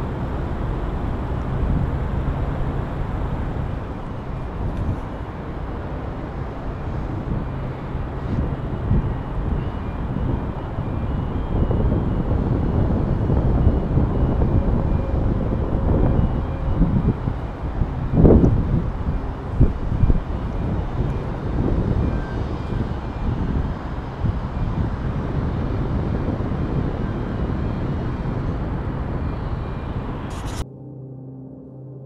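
Wind buffeting an action camera's microphone high on an open iron tower: a steady low rumble that swells into stronger gusts in the middle.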